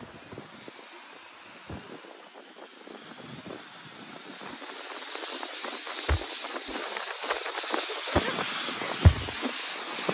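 Inflatable snow tube sliding down a packed-snow run: a hiss of the tube on the snow and of wind on the microphone that grows louder as it picks up speed, with a few thumps over bumps, the loudest near the end.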